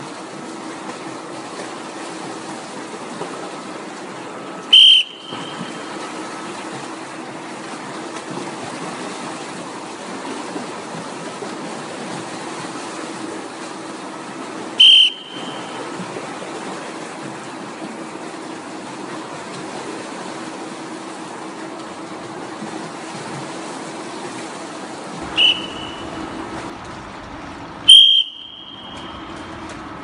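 A swimming instructor's whistle gives short, sharp blasts: one about five seconds in, one about fifteen seconds in, and two close together near the end. Between the blasts there is steady splashing from swimmers, echoing in an indoor pool hall.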